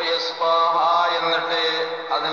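A man's voice chanting a recitation in a drawn-out, melodic way, holding long notes.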